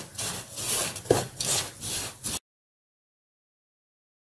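Wooden spatula scraping and stirring grated coconut and spices as they dry-roast in a nonstick pan, in quick repeated strokes. About halfway through, the sound cuts off abruptly to dead silence.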